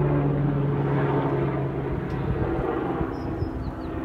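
Police helicopter flying low overhead, a steady engine and rotor drone that slowly fades as it moves off.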